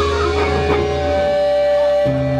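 Garage rock band playing live, electric guitars and bass holding long sustained notes.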